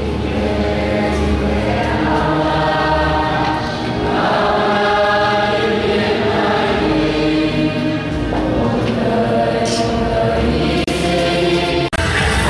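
Church congregation singing a hymn together, many voices holding long notes with slow changes of pitch.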